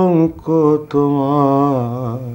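A man singing a slow Bengali song unaccompanied, holding long notes with a wavering pitch. A held note ends just after the start, a short phrase follows, then a long note that slides down and fades near the end.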